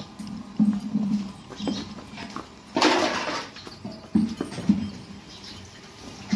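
Murrah buffaloes moving and breathing close by, with several short low dull sounds and one loud half-second rush of noise about three seconds in.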